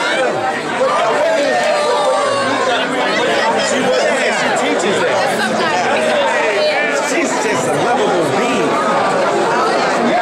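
Crowd chatter: many voices talking over one another at once, steady and loud throughout.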